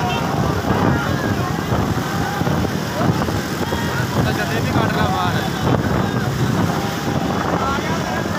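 Steady rumble of motorbike engines and wind buffeting the microphone on a fast ride alongside racing donkey carts, with men shouting over it.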